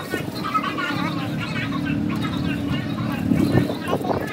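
Indistinct voices talking in the background over a steady low rumble like a nearby vehicle engine.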